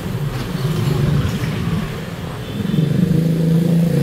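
Motorbike engine running, its pitch rising a little past halfway through and then holding steady and louder.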